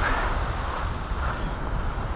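Wind buffeting the microphone over surf on a shingle beach: a steady noise with a strong low rumble.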